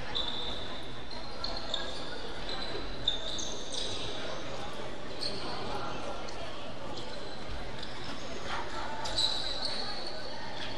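Rubber soles squeaking on a hardwood gym floor: short, high squeaks scattered through, over the echoing murmur of voices in a large sports hall.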